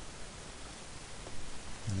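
Steady low hiss of microphone and room background noise, with no distinct events.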